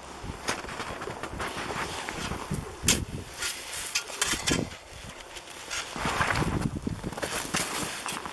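Packed snow crunching and scraping under a person crawling and kneeling inside a dug-out snow cave, with clothing rustle. The sounds are irregular, with louder crunches about three seconds in and again near the end.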